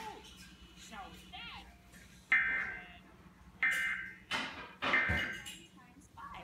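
Cartoon soundtrack playing from a television speaker: gliding tones in the first second and a half, then three loud pitched sound effects about a second and a half apart, each starting suddenly and fading, over a steady low hum.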